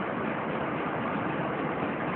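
Steady, even background hiss with no distinct events.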